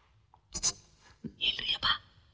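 A person whispering in a few short, hushed bursts, the loudest near the end.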